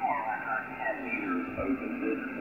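Single-sideband voice signals from an Icom IC-7600 HF transceiver's speaker on the 10 m band. Their pitch slides and they turn garbled as the main tuning dial is turned across them. They come through a narrow 2.4 kHz receive filter over band hiss, with BHI digital noise reduction switched on.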